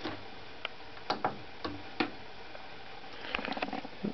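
Light clicks and knocks of small things being handled, a few spread apart and then a quick run of small clicks near the end.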